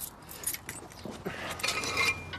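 Small metal objects jingling and clicking as they are handled, busiest near the end.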